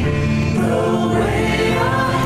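Mixed choir of men and women singing a slow sacred anthem in chords, accompanied by acoustic guitar and keyboard.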